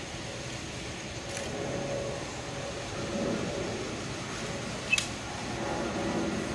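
Steady outdoor background rumble, broken about five seconds in by a sharp double click as a guard's rifle is handled during the rifle inspection, with a fainter click earlier.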